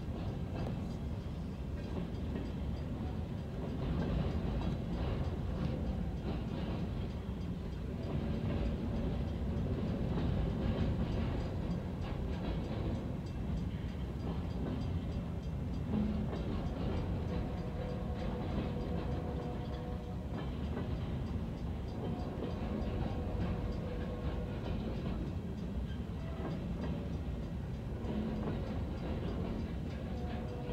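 Long freight train of empty trash container cars rolling past a grade crossing, a steady rumble of wheels on rail with some clickety-clack, heard from inside a car. Faint steady tones come in during the second half.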